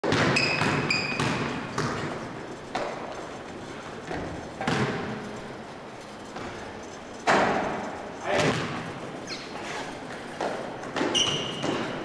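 Basketball thudding on a hardwood gym floor and players' footfalls, about ten separate impacts, each ringing on in the large hall. A few short high sneaker squeaks come near the start and again near the end.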